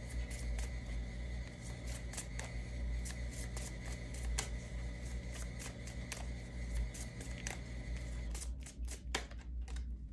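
A deck of oracle cards being shuffled by hand: a run of quick, irregular card clicks and snaps. Underneath runs a faint steady hum that cuts off near the end.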